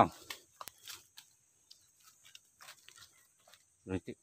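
Footsteps crunching on dry leaf litter and twigs: scattered light crackles and snaps at uneven intervals. A brief voice sound comes just before the end.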